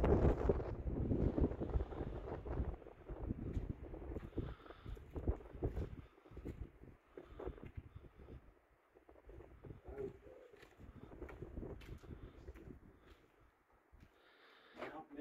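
Wind buffeting the microphone in gusts, strongest in the first few seconds and easing off after about six seconds.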